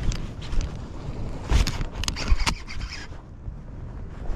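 Handling noise: a jacket sleeve rubbing and knocking against the camera while an angler fights a hooked fish from a kayak, with a few sharp knocks about halfway through. Wind rumbles on the microphone underneath.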